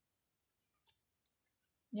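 Near silence with two faint short clicks about a second in, a third of a second apart; a woman's voice begins right at the end.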